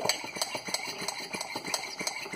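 Hand-squeezed brake bleeder vacuum pump clicking in a quick, even run with each squeeze of its handle as it draws a vacuum on a mason jar through a vacuum-sealer jar attachment, nearly at its target reading.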